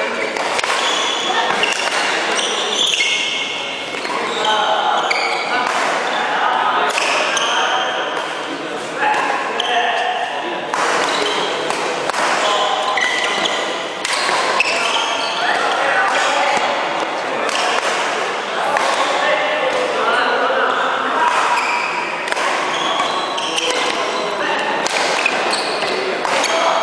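Badminton rackets striking a shuttlecock again and again through rallies, sharp cracks echoing in a large hall, over indistinct voices.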